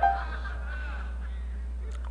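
A man's short, rising hummed note cuts off at the very start, followed by a low, steady electrical hum with only faint traces of sound above it.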